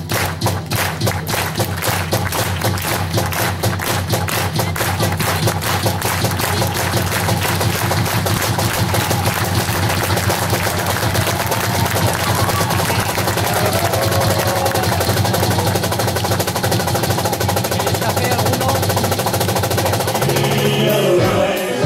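A rapid drum solo played with sticks on a percussion set that includes a conga. The strokes come fast and run together into a near-continuous roll, over a steady low tone.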